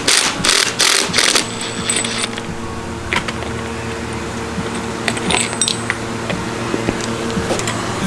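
Cordless impact driver hammering in four short bursts on a socket, breaking loose a scooter's clutch nut within the first second and a half. Small metallic clinks follow as the socket and clutch parts are handled.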